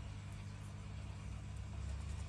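A steady low hum of background noise, with no distinct event.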